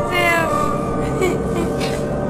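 A high crying call that falls in pitch over about half a second, followed by fainter cries, laid over a steady eerie music drone.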